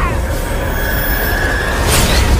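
A steady, high-pitched metallic whine held over a heavy low rumble, ending in a sudden sharp burst: a sound effect in an animated fight scene.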